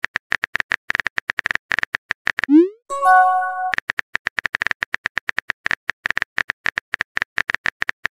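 TextingStory app sound effects: a rapid run of keyboard typing clicks, then a short rising whoosh and a chime of a few held tones as a message is sent, about two and a half seconds in. Then the typing clicks start again.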